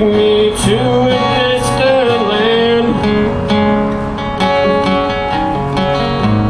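Acoustic guitar strummed in a steady rhythm, with a man singing long held notes through roughly the first half.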